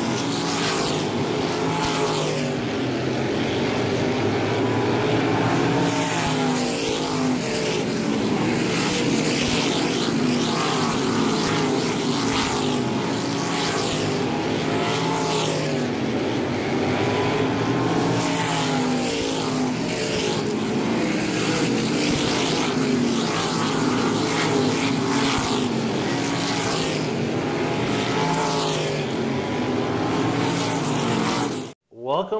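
Engines of small winged sprint cars racing on a paved short-track oval, several engine notes rising and falling again and again as the cars accelerate down the straights and lift for the turns.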